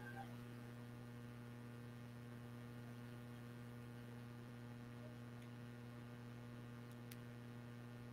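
Faint, steady electrical mains hum: a low buzz with its overtones and no other sound.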